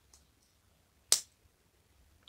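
Two LEGO plastic pieces snapping together: a single sharp click about a second in as a part is pressed into place.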